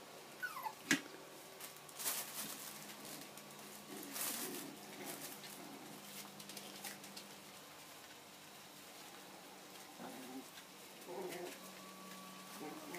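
Young Bichon Frise puppies whimpering: one short falling whine about half a second in, then sharp scratchy noises and clicks as the litter moves about.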